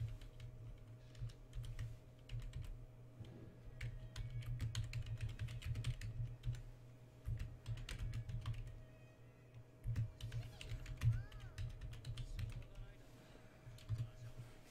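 Typing on a computer keyboard: quick, irregular keystrokes in bursts with short pauses, over a faint steady hum.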